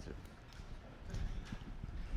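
Faint, irregular low knocks and thumps of a person moving about and handling things while searching for a board eraser.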